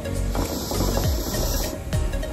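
A hookah being drawn on through its hose, a hissing draw with the water bubbling, starting about half a second in and stopping shortly before the end, over background music.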